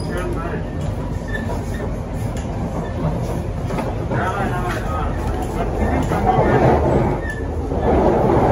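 Siemens C651 electric metro train running along the line, heard from inside the passenger car: a steady rumble of wheels on rails with running noise from the car, and voices of passengers over it.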